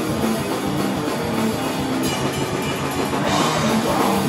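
Live heavy rock band playing: a drum kit with cymbals under distorted electric guitar, the cymbals growing brighter a little after three seconds in.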